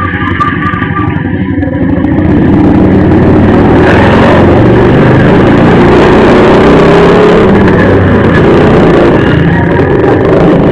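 Loud, distorted road traffic and vehicle engine noise, getting louder about two seconds in, with an engine rising in pitch around the middle.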